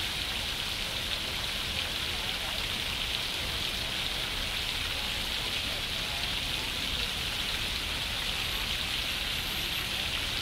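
Water falling in a curtain of thin streams from an overhead steel pipe fountain, an even, steady hiss like heavy rain.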